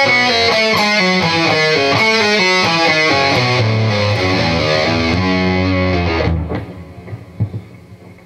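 Electric guitar playing a fast descending run of single notes, a country-style lick of pull-offs to open strings, for about six seconds before stopping.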